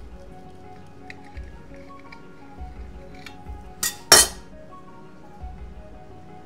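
A metal knife clinks twice against a glass dish, two sharp strikes close together about four seconds in, over soft background music.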